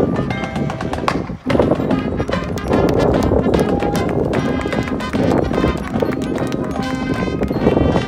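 Marching band playing loud brass chords over busy percussion, with a clip-clop of galloping hooves in the mix. The sound breaks off briefly about a second and a half in, then the full band comes back in.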